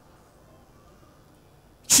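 Faint room tone during a short pause in a sermon. Near the end, a man's amplified voice cuts back in abruptly and loud.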